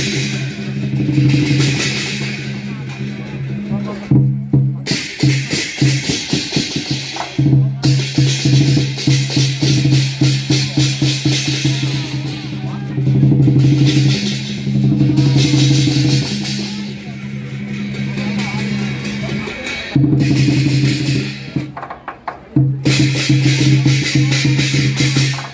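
Lion dance percussion playing: a drum beating fast against clashing cymbals and ringing gongs, with short breaks about four seconds in and again near the end.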